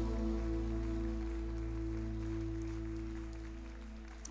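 A live worship band's final chord held and ringing out, steady with no beat, slowly fading.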